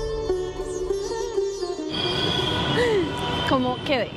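Background music: a bending melody line over a steady low drone, which cuts off suddenly about two seconds in. Street noise and a voice follow.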